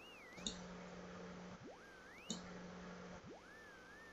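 Audio tone of a vegetative resonance test (VRT) electropuncture measuring device: a faint tone sweeps quickly up in pitch, then levels off and wavers as the reading settles, three times in a row, the first two ending in a click. A low steady hum sounds between the sweeps.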